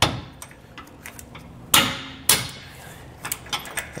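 Hammer striking a loosened tow hook bolt in a truck's frame rail to drive it out: a sharp metallic knock at the start, the loudest two close together about two seconds in, then a few lighter taps near the end.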